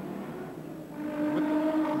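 Touring car engine running at speed on the circuit, a steady droning engine note that strengthens about a second in, heard through an old TV broadcast soundtrack.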